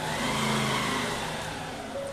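Engine noise of a motor vehicle passing by, swelling early and then slowly fading away.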